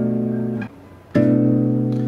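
Classical guitar strumming a B minor 7 flat 5 (half-diminished) chord, the seventh-degree chord in C major. The chord rings, is damped about two-thirds of a second in, then is strummed again about a second in and left ringing.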